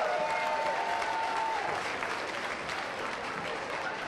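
Audience applauding, the clapping slowly dying down. A single held high tone sounds over the first second and a half, bending down as it stops.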